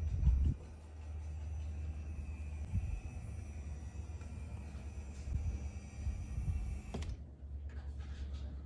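Electric motor of a power recliner running with a steady low hum as the chair reclines, with a few soft knocks from the mechanism.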